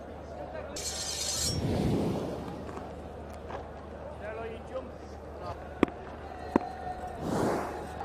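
TV broadcast graphics transition effects: a glittery swoosh with a low rumble about a second in and another swoosh near the end, over a low background of faint voices, with two sharp clicks shortly before the second swoosh.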